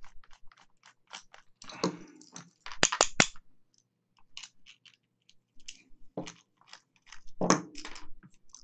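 A screwdriver turning out the screws of a metal cable-connector shell, a run of quick ticking clicks, followed by handling noise: a rustle, three sharp clicks about three seconds in, and a few scattered knocks as the connector and its screws are handled on the bench.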